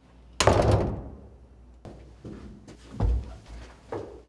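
A wooden door slams shut about half a second in, its bang dying away briefly. A softer thump follows about three seconds in.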